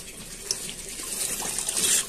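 Water running steadily into an aquaponics settling tank from the recirculation flow, splashing and churning the surface, louder near the end.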